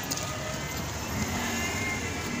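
Busy outdoor background: a steady low rumble of vehicle traffic with faint distant voices.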